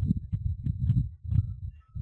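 Irregular low thumping and rumbling on a headset microphone, with a few faint clicks: microphone handling noise.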